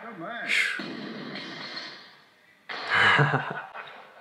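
A man's wordless exclamations and laughter: short rising-and-falling cries near the start, then a louder laugh about three seconds in.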